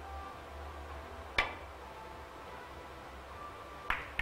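Three-cushion billiards shot: one sharp click of the cue tip striking the cue ball about a second and a half in. Near the end come two quick clicks of the carom balls colliding. A low steady hum of the hall runs underneath.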